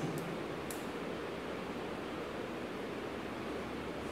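Steady background hiss of room tone, with no distinct source, and one faint click a little under a second in.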